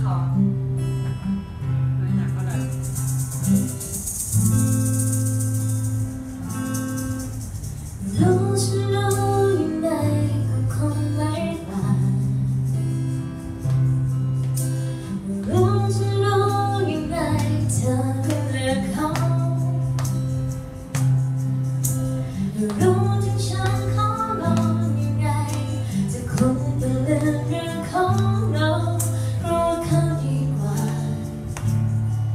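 Acoustic guitar with a steady low accompaniment. A woman's singing voice comes in about eight seconds in and carries the melody in phrases.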